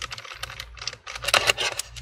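Irregular small clicks and scrapes of a Phillips screwdriver backing screws out of a laptop's plastic bottom case.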